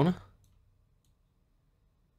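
A man's voice finishing a word, then near silence: room tone.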